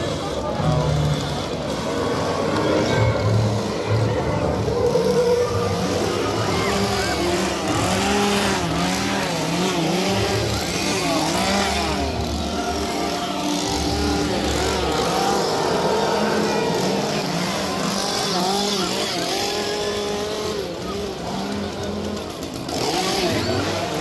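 Horror-attraction soundtrack over loudspeakers: low pulsing bass with repeated wavering, gliding synth tones, over the chatter of a walking crowd.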